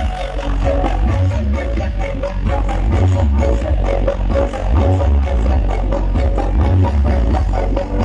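Loud electronic dance music blasting from a truck-mounted sound-system speaker stack, dominated by heavy, pulsing bass.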